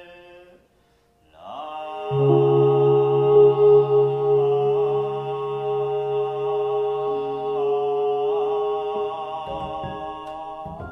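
Japanese Buddhist sutra chanting: a male voice holds long, slowly inflected notes over sustained ambient background music. The chant breaks off briefly about a second in, then a new phrase starts, with a low drone entering under it.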